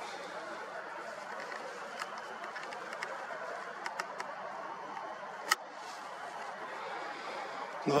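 Quiet outdoor evening ambience: a steady haze of distant city noise with indistinct far-off voices. A few light clicks come through, the sharpest about five and a half seconds in.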